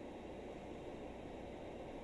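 Faint steady hiss of background noise, with no distinct sound events.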